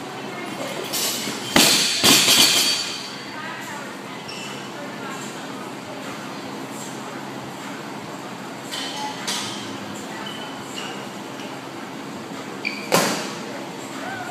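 A loaded barbell with bumper plates dropped from the front rack onto the gym floor about a second and a half in, landing with a loud crash and bouncing a couple of times. A single sharp knock near the end.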